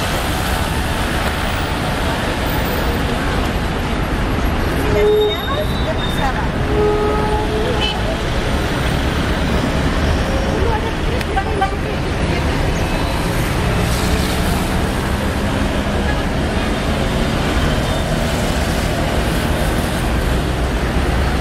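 Steady parking-lot traffic noise from cars, with voices in the background and a few brief tones about five and seven seconds in.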